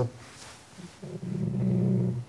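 A man's drawn-out hesitation sound: after a short pause, one low, steady vocal note starts about a second in and is held for about a second.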